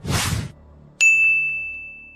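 Logo-animation sound effect: a short whoosh, then about a second in a single bright ding that rings on and fades away.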